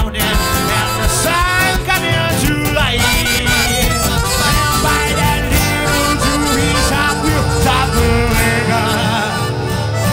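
Live band playing an instrumental break of an up-tempo swing number. Double bass and acoustic guitar keep a steady rhythm under a wavering lead melody line.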